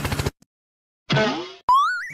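Cartoon-style comedy sound effects: after a brief silence, a boing about a second in, then a click and a short rising tone near the end.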